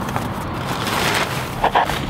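Rustling and crinkling as a plastic bag of peat moss is handled and opened.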